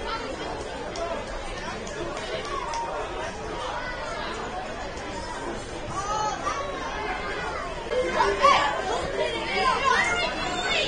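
Scattered voices carrying across a small soccer stadium during play: shouts from the pitch and touchline and chatter from spectators. The calls grow louder near the end.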